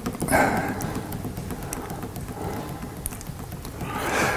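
A pause in speech: steady low room rumble and faint rustling picked up by a clip-on lapel microphone, with a short soft noise about a third of a second in.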